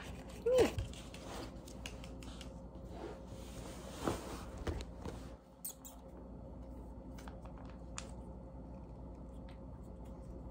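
Quiet crinkling and rustling of a plastic cat-treat pouch being handled and torn open, with a few soft clicks. A brief falling pitched vocal sound comes about half a second in.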